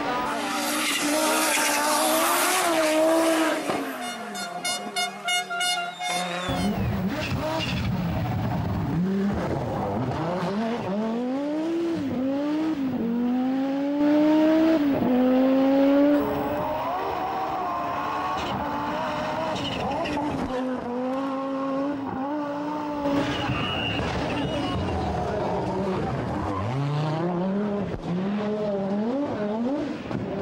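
Group B rally car engines revving hard and rising and falling in pitch through repeated gear changes as the cars are driven flat out on the stage. The sound dips and changes briefly about four to six seconds in.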